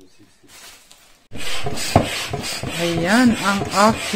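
Hand air pump inflating an inflatable stand-up paddle board, a rasping rush of air with each quick stroke, starting about a second in.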